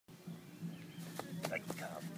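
Three sharp snaps in quick succession about a second in, over a steady low hum: clothing and feet on dry leaf litter during an explosive Tai Chi fa jing push.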